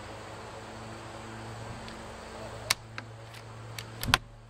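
Bolt action of an Umarex Gauntlet 30 PCP air rifle worked by hand to load a pellet: a sharp metallic click a little over two and a half seconds in, then a few lighter clicks near the end, over a steady low background hum.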